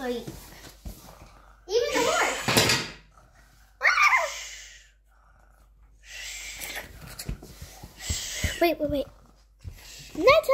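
Children's voices, murmured and breathy play talk in short stretches, with a high falling vocal glide about four seconds in and a short spoken "Wait" near the end.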